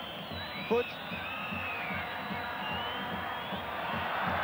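Stadium football crowd noise, with several long whistles rising and falling over the crowd's steady din.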